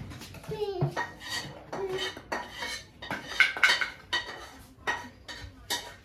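Irregular clinks and clatters of hard objects, like kitchenware being handled, scattered throughout and loudest about three and a half seconds in.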